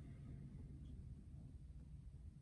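Near silence: quiet room tone with a faint, steady low rumble.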